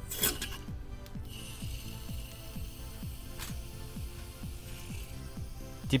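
Background music with a regular beat. Under it, a steady hiss runs from about a second in until shortly before the end: an aerosol can of evaporator foam cleaner spraying through a plastic extension hose into the air-conditioning evaporator drain.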